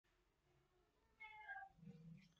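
Near silence, then about a second in a faint, short pitched call that falls in pitch over about half a second, followed by a faint low murmur.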